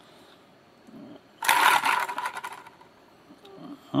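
Pivoting arm of a homemade magnet-gate wheel released by a spring-loaded launcher and swinging around the ring of magnets. About a second and a half in it gives a brief, rapid rattling clatter lasting about a second, then fades.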